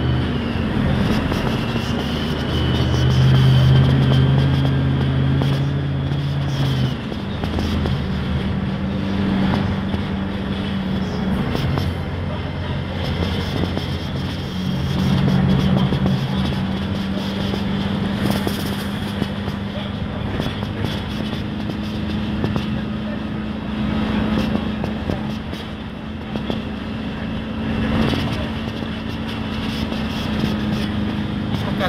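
Inside a CAIO Apache Vip IV city bus on a Mercedes-Benz OF-1519 chassis: the front-mounted four-cylinder diesel drones steadily on the move, its pitch stepping up and down several times, with scattered knocks and rattles from the body.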